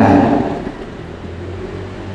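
A man's voice trails off at the start, then a pause filled by a steady low hum.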